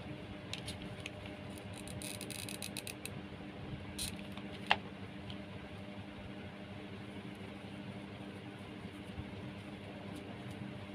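Faint rustling and small clicks of thin wire being wound around jute rope by hand, with one sharp click a little before halfway, over a steady low hum.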